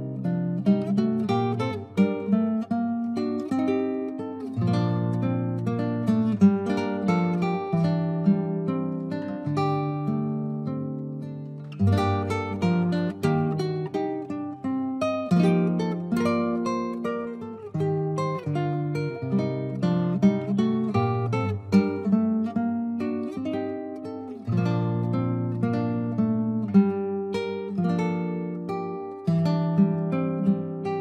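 Nylon-string classical guitar played fingerstyle: a steady flow of plucked, ringing notes over a moving bass line, with a firm low note struck about twelve seconds in.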